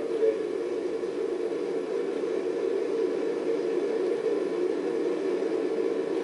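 A five-segment solid rocket booster firing on a horizontal static test stand: a steady, unbroken noise heard through a TV's speakers, so its sound sits mostly in a narrow mid-low band.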